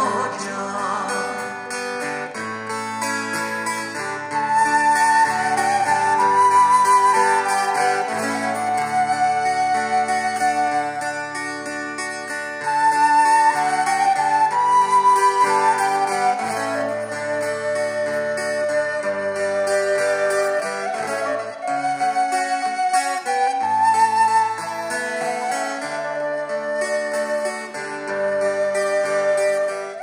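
Folk instrumental: a wooden pastoral pipe plays an ornamented, wavering melody over acoustic guitar chords.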